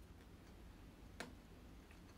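Quiet eating sounds, mostly near silence with faint mouth noises, and one sharp click a little over a second in.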